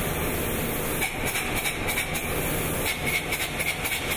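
Spray-foam gun applying closed-cell polyurethane foam insulation to a steel tank: a steady, loud hiss with rapid, irregular sputtering.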